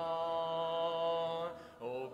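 A hymn sung a cappella, a male voice holding the last note of the line steady for about a second and a half, then a brief breath before the next line begins near the end.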